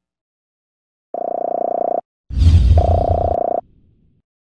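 Outro sound effect: two short, buzzy horn-like blasts, the first about a second long and the second a little shorter, with a loud low rumble and hiss that starts between them and runs under the second.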